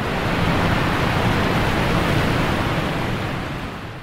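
A steady rushing noise, wind-like, that swells in, holds even and fades away near the end: a sound effect laid under the closing shot, with no voice.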